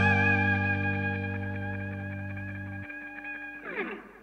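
The final chord of a rock song ringing out on distorted electric guitar and bass and slowly fading. The bass note cuts off at about three seconds in, and a brief downward sliding sound comes just before the chord stops.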